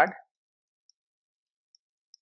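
Near silence broken by a couple of faint computer-keyboard keystroke clicks as text is typed.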